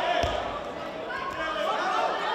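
People calling out in a large sports hall, with a single dull thump just after the start.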